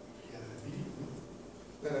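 Quiet room with a faint, muffled voice murmuring in the background. A man's voice starts close to the microphone near the end.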